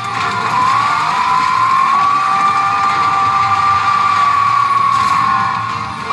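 Sound effect from a Newgin P真・花の慶次3 pachinko machine: one long held tone that rises slightly in pitch in the first second, then holds steady over a low rumble, tailing off near the end. It leads into a button-press gauge challenge.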